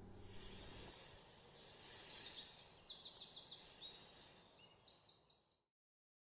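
Outdoor nature ambience: a steady high hiss with two quick runs of short, high chirps, fading out near the end.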